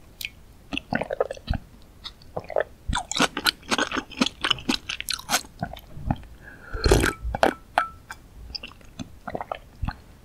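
Close-miked mouth sounds of drinking spicy fish-cake broth straight from a glass dish: irregular sips, swallows and wet mouth clicks, with a louder gulp about seven seconds in.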